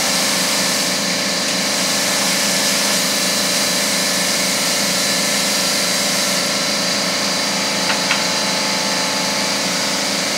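Steady mechanical running noise from workshop machinery: an even hum with a constant high whine, unchanging throughout, and a faint short tick about eight seconds in.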